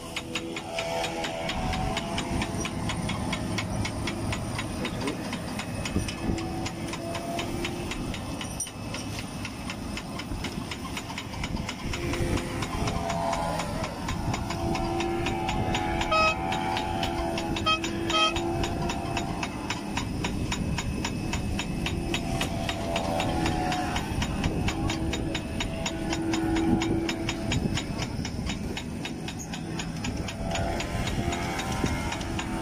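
Fishing boat's engine running steadily under rushing wind and sea-water noise, with a humming engine tone that swells and fades several times.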